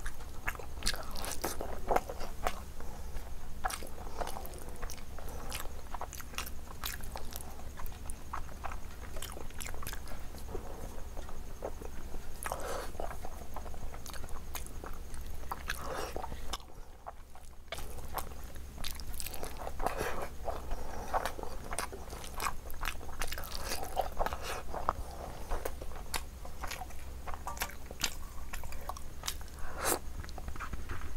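Close-miked wet chewing and lip smacking as rice and mutton curry are eaten by hand, with the squelch of fingers mixing rice and gravy. The sound drops away briefly a little past halfway.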